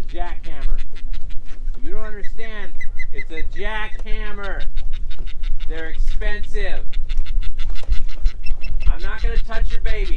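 Loud bird calls in several clusters of a few calls each, every call rising then falling in pitch, over a steady low rumble.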